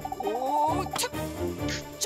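Cartoon sound effect for a handheld gadget being shaken and switched on: a rapid warbling trill with a rising glide, cut off by a sharp click about a second in. Light background music follows.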